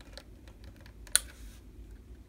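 Light clicks and taps of a wooden strip being handled and pressed against a model ship's bulwarks, with one sharp click about a second in.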